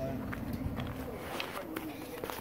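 Footsteps walking on a concrete path, a few short scuffs and knocks, with a faint voice in the background.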